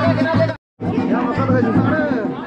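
A song playing over the chatter of many voices, with a brief dead-silent gap just over half a second in.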